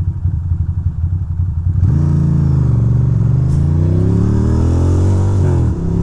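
2006 Ducati Monster 620's air-cooled L-twin idling with an uneven beat. About two seconds in it pulls away, its pitch rising steadily under acceleration, and there is a brief drop near the end like an upshift.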